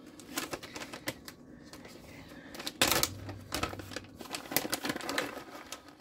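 Irregular light clicks and crackles, loudest about three seconds in: a packet of chopped walnuts being handled and opened.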